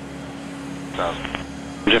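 Air traffic control radio chatter: a short clipped transmission about a second in and a voice starting near the end, over a steady low hum with one constant tone.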